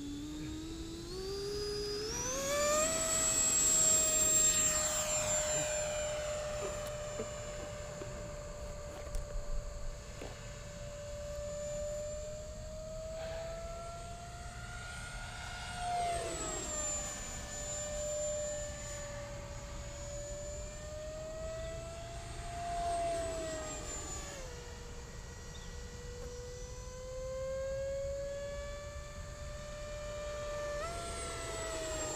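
Electric ducted-fan whine of an FMS 80 mm BAE Hawk RC jet. The pitch climbs over the first few seconds as the throttle comes up, and the sound is loudest about four seconds in. After that it holds a steady whine that wavers in pitch and drops sharply as the jet passes, about halfway through and again a little later.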